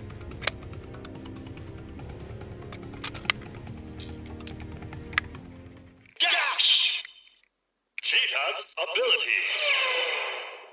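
Background music with a few light clicks from handling a plastic toy. About six seconds in the music stops and a Rushing Cheetah Progrise Key sound toy plays its electronic voice and effects through its small speaker, in two bursts with bending pitch and almost no bass.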